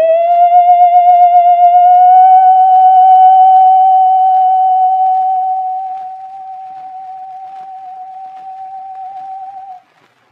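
An operatic contralto on a 1909 acoustic 78 rpm disc holds one long high note with vibrato. It is loud at first, softens about halfway through, and stops suddenly just before the end.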